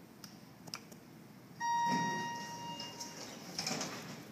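A ThyssenKrupp elevator's call button clicks, then its arrival chime sounds once, a single ding that rings and fades over about a second and a half. Near the end a brief rush follows as the doors start to slide open.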